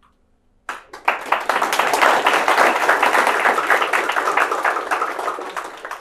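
Audience applauding: a dense patter of many hands clapping starts under a second in, swells quickly, then slowly dies away near the end.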